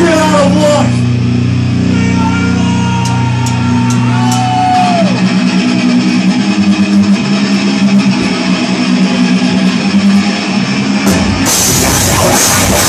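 Heavy rock band playing live: distorted electric guitars, bass and drum kit holding sustained chords, with a sliding note that falls away about five seconds in. Near the end the full band comes in, louder and brighter.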